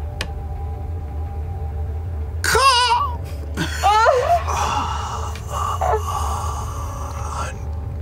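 Players' vocal reactions: a high, wavering wail about two and a half seconds in, then a second rising, wavering cry, followed by a few seconds of mixed laughter and murmuring voices.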